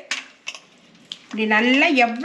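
A hand squishing and stirring thick pearl millet porridge in a steel bowl, with a few short clicks against the metal. A woman starts speaking about halfway through.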